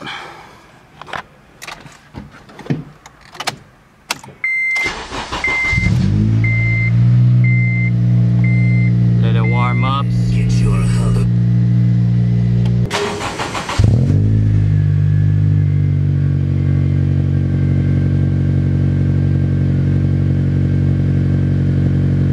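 Honda Civic Si (FG2) 2.0-litre four-cylinder started after an oil change: the starter cranks for about a second, the engine catches, and it settles into a steady idle while an electronic chime beeps repeatedly. Near the middle the engine sound cuts out and it is cranked and started again, then idles steadily.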